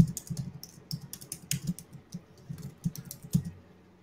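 Typing on a computer keyboard: a fast, irregular run of key clicks that stops shortly before the end.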